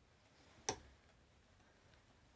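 Plastic cushion foundation compact snapping shut: one sharp click less than a second in.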